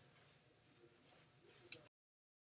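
Near silence with faint room tone, broken near the end by one short click of a steel nut against a bolt as it is threaded on by hand; just after, the sound cuts off completely.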